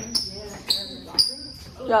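Sneakers squeaking on a hard floor: three short, high squeaks about half a second apart, each sliding slightly down in pitch.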